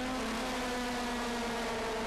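Engines of historic Formula Junior racing cars running at speed on track, a steady drone with a few held notes that barely change in pitch.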